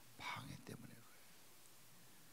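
A man's voice saying a brief, quiet phrase in the first second, then a pause with only faint room tone.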